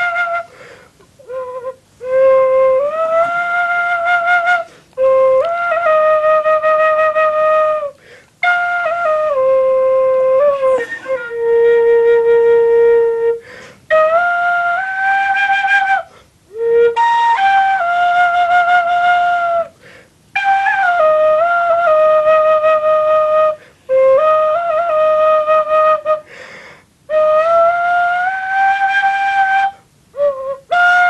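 A slow solo tune played live on a flute-like wind instrument: one melodic line of long held notes in short phrases, broken by brief breath pauses, with a quick wavering ornament on some notes.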